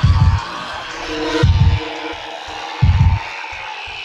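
Drum and bass music in a sparse passage: deep bass hits about every second and a half, with two short stabs near the end, under a held synth tone.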